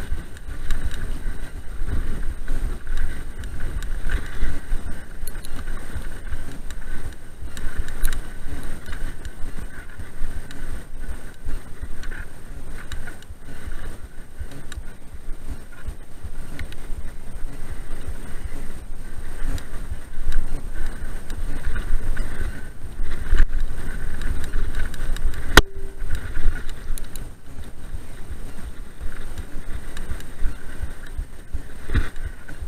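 Mountain bike ridden fast over a rough grass track, picked up by a rider-mounted action camera: wind on the microphone and a steady jolting rattle of the bike over the bumps, with one sharp click late on.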